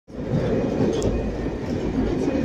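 Diesel train running along the rails, heard from inside its rear cab: a steady low rumble and rattle, with a faint click about a second in.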